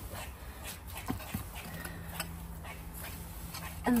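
Faint scrapes and rustles of compost being dragged out of a plastic compost bin's bottom hatch with a long-handled metal garden tool. A steady low hum comes in about two seconds in.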